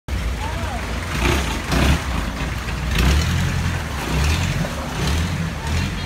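Boat engine running with a steady low rumble that swells and dips, heard from aboard, with faint voices in the background.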